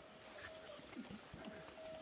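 Quiet outdoor ambience, with a faint, thin, steady tone that fades out and back in.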